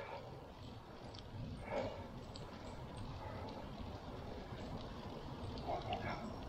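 Steady low rumble of a bicycle being ridden on a paved path: wind on the microphone and tyres rolling, with a couple of faint brief sounds about two seconds in.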